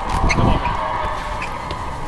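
Scuffle noise as police officers wrestle a man to the ground: dull thumps and handling noise, loudest about half a second in. Under it a steady, high sustained tone of unclear source sets in at the start and slowly fades.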